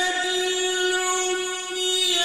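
A male Quran reciter's voice holds one long, steady note in melodic mujawwad-style recitation, with a brief dip just before the end.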